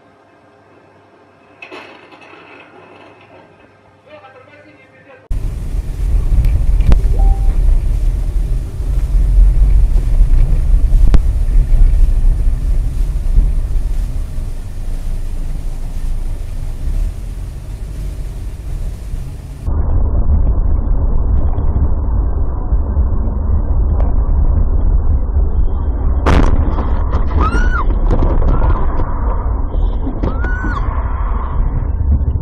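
Car dashcam audio: quiet for about five seconds, then a sudden loud, low rumble of road and wind noise from a car driving on snowy roads. It changes abruptly about twenty seconds in, and voices come in near the end.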